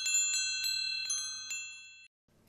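Chimes tinkling: several light strikes of bright, high ringing tones that ring on together and fade out near the end.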